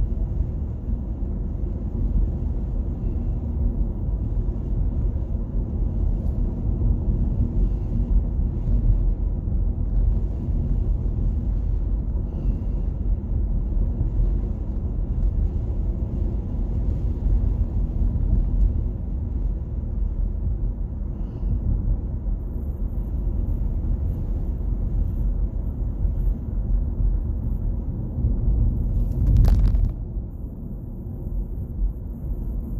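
Steady low rumble of road and tyre noise inside a moving car's cabin, rising briefly just before the end.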